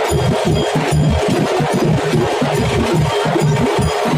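Music with a steady, fast percussion beat and a prominent bass line.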